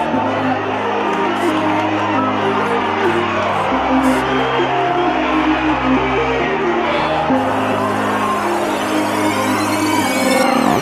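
Background music: held chords that change every few seconds, with no vocals yet.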